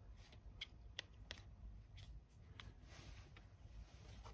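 Near silence with a few faint clicks of small plastic generator parts being handled, the turbine wheel and housing knocking lightly together.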